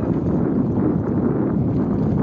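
Steady rush of wind on the microphone and the low rumble of a bicycle rolling along an asphalt road, with a few faint ticks.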